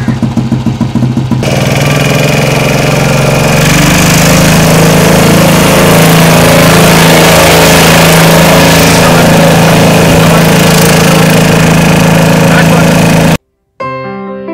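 Single-cylinder Royal Enfield Bullet-style motorcycle engine idling with an even thump, about seven beats a second. About a second and a half in, a louder continuous noise with a steady low hum takes over and cuts off suddenly near the end.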